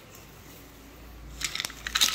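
Mostly quiet room, then a short cluster of light clicks and rattles in the last half second.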